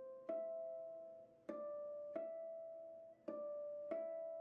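Solo harp plucking a slow, repeating figure of two-note chords in the middle register, four in all, each left to ring and fade before the next.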